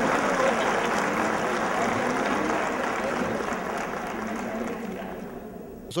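Audience applauding in a large hall, dying away gradually toward the end.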